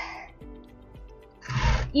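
Soft background music with faint steady tones during a pause in speech. Near the end comes a short rushing noise.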